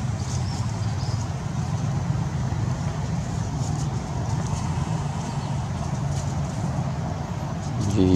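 Steady low motor rumble, like an engine running at idle.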